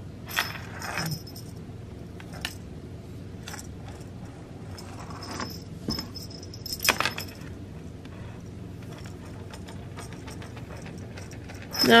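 A feather wand cat toy being jiggled and dragged across a wooden floor: a handful of short, light metallic jingles and rattles, the loudest about seven seconds in.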